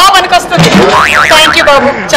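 A cartoon-style 'boing' comedy sound effect whose pitch wobbles rapidly up and down about a second in, laid over voices.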